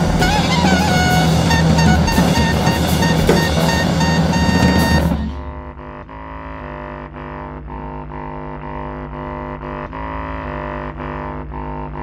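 Live improvised music from electric bass, drum kit, clarinet and electronics: a loud, dense passage with crashing cymbals that cuts off abruptly about five seconds in. What is left is a quieter, steady drone of sustained tones with faint clicks.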